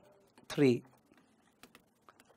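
Stylus tapping and clicking on a digital whiteboard screen while handwriting, a few faint sharp clicks in the second half.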